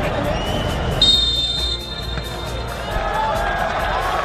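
Football stadium crowd noise, with a short high-pitched referee's whistle blast about a second in.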